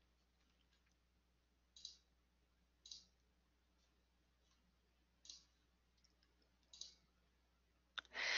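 Near silence with four faint, short clicks spaced one to two and a half seconds apart, over a faint low hum.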